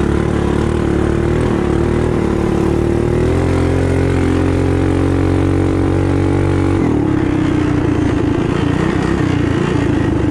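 Built racing mini bike's small engine running hard. Its pitch climbs and holds steady for a few seconds, then drops abruptly about seven seconds in as the throttle is let off, and then wavers up and down with the throttle.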